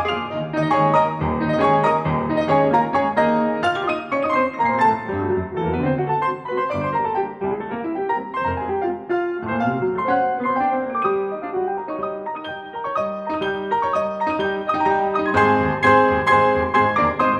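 Four grand pianos, two Estonia L168s, a Yamaha DC2X and a Mason & Hamlin Model A, played together in an eight-hand arrangement, thick with many notes at once. The playing eases a little about three-quarters through, then swells fuller and louder near the end.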